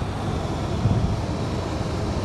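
A car driving, heard from inside its cabin: steady tyre and road noise on a wet, snow-edged dirt lane.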